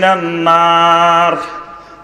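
A man's voice holding one long, steady chanted note in the sung style of a Bengali waz sermon, drawing out the end of an Arabic hadith line; the note fades out about a second and a half in.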